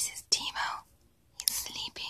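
A person whispering in about three short, breathy bursts.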